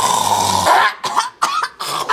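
A woman coughing hard: a long harsh cry from the throat, then from about a second in a quick run of short, sharp coughs.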